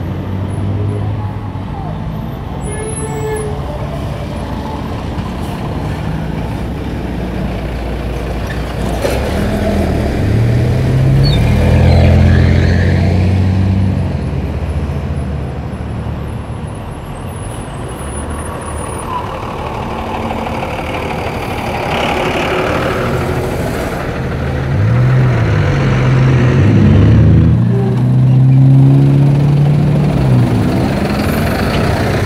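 Road traffic passing close by: buses and cars driving past. Their engine sound rises and falls as each one goes by, loudest about twelve seconds in and again near the end.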